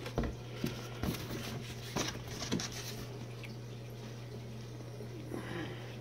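Faint handling of a cardboard product box, a few light taps and rustles in the first half, over a steady low hum.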